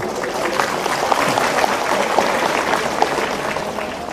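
Audience applauding steadily: a dense patter of many hands clapping at an even level throughout.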